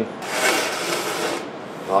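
A scraping, rubbing slide of an object being pushed across a worktop, lasting a bit over a second.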